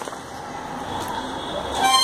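A clear plastic bag crinkling as it is handled. Near the end, a louder steady pitched tone starts and holds, like a horn.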